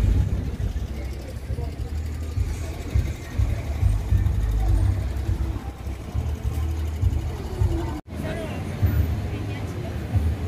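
Outdoor ambience: a loud, uneven low rumble with faint voices of people around. The sound drops out for an instant about eight seconds in, then carries on much the same.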